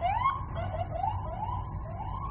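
A siren sounding in quick rising sweeps, about two to three a second, over a low traffic rumble.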